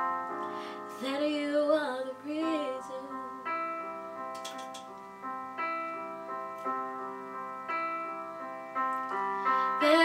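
Piano accompaniment for a slow ballad, sustained chords struck about once a second, with a short wordless sung phrase from a female voice about a second in.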